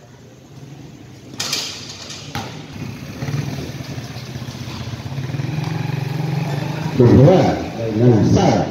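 Two sharp knocks of a basketball bouncing on the concrete court. Then a motor vehicle's engine hum passing near the court, growing steadily louder over several seconds. A voice shouts near the end.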